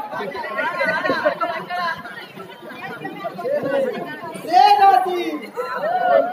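Voices talking throughout, with a louder, drawn-out call about four and a half seconds in.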